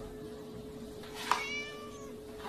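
A kitten mewing once, a short high mew about one and a half seconds in, over a faint steady hum.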